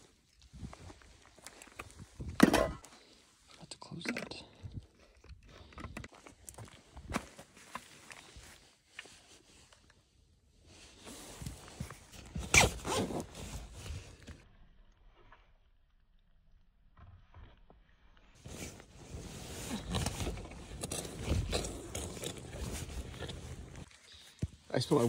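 Irregular steps and gear handling on gravelly ground, then a sleeping-bag zipper pulled about halfway through, followed by steady rustling of nylon sleeping-bag and tent fabric.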